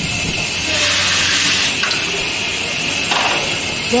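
Vibratory bowl feeder running, steel screws and washers rattling steadily along its vibrating tracks as a continuous hiss-like chatter, over a low steady hum from the feeder's drive.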